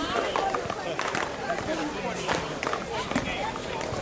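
Indistinct voices of people talking around the courts, with a few sharp knocks through them, typical of paddleballs being struck.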